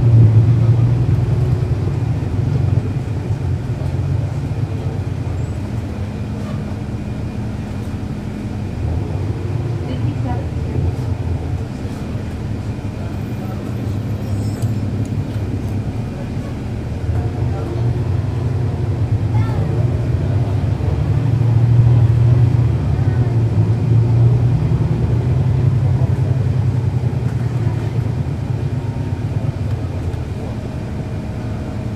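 Cummins ISL9 diesel engine of a NABI 40-SFW transit bus, heard from on board while the bus is driven in traffic. The engine is louder at the start and again about two-thirds of the way through, easing off in between as the bus pulls away and slows.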